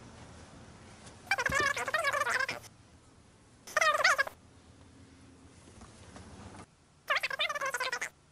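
A squeaky, very high-pitched voice shouting unintelligible gibberish in three outbursts: a longer one about a second in, a short one midway and another near the end. A faint low hum runs underneath and stops shortly before the last outburst.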